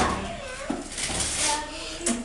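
Faint voices with light rustling as cardboard gift boxes are handled.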